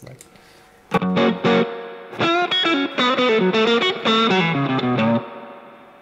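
Stratocaster-style electric guitar played through a Fender blackface amp with a green Tube Screamer overdrive pedal engaged, giving a mid-heavy, lightly overdriven lead tone. A couple of notes come about a second in, then a quick run of single-note licks that rings out near the end.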